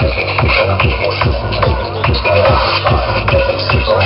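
Psytrance music playing loud, with a fast, steady four-on-the-floor kick drum of about two to three beats a second under layered synth lines.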